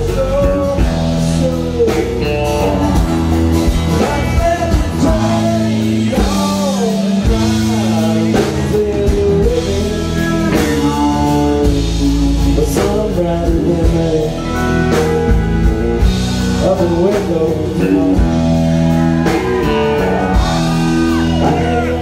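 Live country song: a man singing into a microphone while strumming an acoustic guitar, with sustained low notes under the voice.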